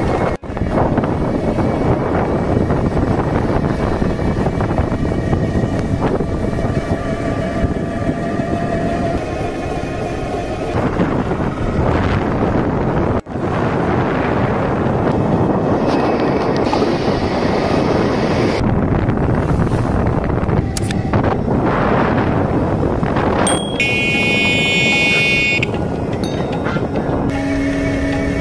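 Steady road-vehicle running noise, with a horn sounding near the end.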